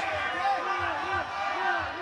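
Indistinct voices of the arena crowd, a little quieter than the commentary around them.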